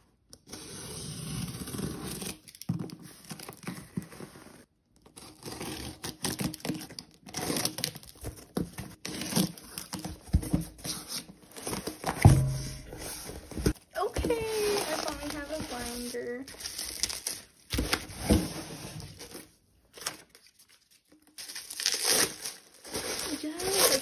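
A cardboard shipping box being opened by hand: packing tape tearing, cardboard flaps scraping and rustling, with a sharp thump near the middle. Plastic bubble wrap crinkles around the ring binder inside.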